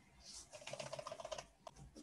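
Computer keyboard typing: a quick run of faint keystrokes lasting about a second, then one or two more near the end.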